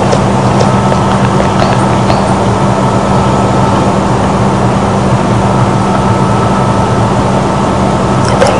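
A steady, loud background hum with hiss and a few constant tones, unchanging throughout.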